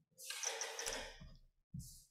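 A man's audible breath into a close microphone, lasting about a second.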